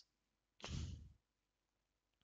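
A single short breath, about half a second long, a little after half a second in. Otherwise near silence.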